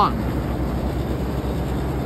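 Steady low hum and rush of Daikin VRV outdoor condensing units running, with a slight even pulsing in the low end.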